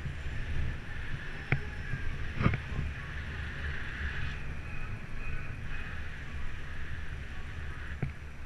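Wind buffeting the microphone of a camera on a moving bicycle, with a steady low rumble of riding over the road. Two sharp knocks come about one and a half and two and a half seconds in.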